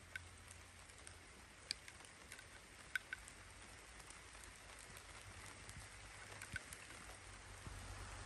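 Quiet outdoor ambience in a pine forest: a faint steady hiss with a few scattered light ticks.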